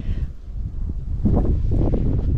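Wind buffeting the microphone: a rough, rumbling noise that gets louder a little over a second in.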